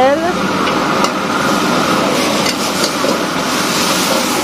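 Yellow noodles and vegetables stir-frying in a wok over a high gas flame: a steady rushing noise with sizzling, and a few clinks of the metal ladle against the wok.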